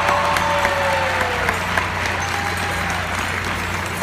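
Circus audience applauding, with a drawn-out cheer held over the clapping in the first second and a half.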